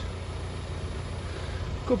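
Steady low rumble of an idling vehicle engine. A man's voice cuts in right at the end.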